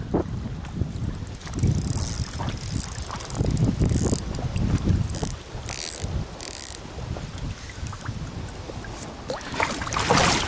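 Spinning reel clicking and ratcheting in spells as a hooked fish is played and reeled in, over a low rumble.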